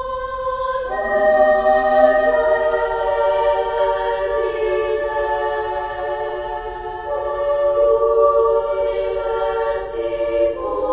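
A treble choir sings a slow choral piece in sustained chords of several parts. A single line is already sounding at the start, and the other voices join about a second in to fill out the chord. The chords then change slowly, with a brief breath near the end.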